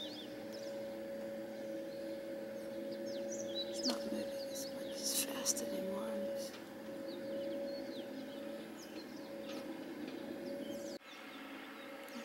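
Outdoor ambience of birds chirping in short high calls over a steady hum, with a few faint clicks about halfway. The sound cuts off abruptly about a second before the end.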